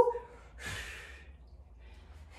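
A woman's single heavy exhale, a breathy hiss of about half a second starting just over half a second in, as she breathes out with effort during a weighted side lunge.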